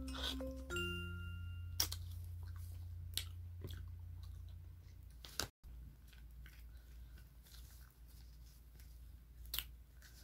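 Soft clicks and crunches of a metal spoon scraping passion fruit shells and of the seedy pulp being chewed. A light mallet-percussion tune plays over the first two seconds and stops.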